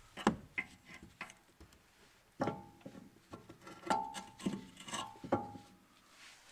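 Sharp metallic clicks and clinks as the handbrake cable is hooked into the lever of a VW Golf V's new rear brake caliper, about a dozen irregular clicks, three of them followed by a brief ringing.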